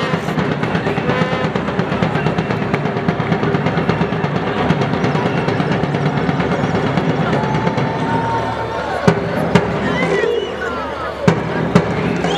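Music with steady drumming and singing voices, most likely a drum band and fans singing in the stands. A few sharp bangs and short rising whistle-like notes come in the last few seconds.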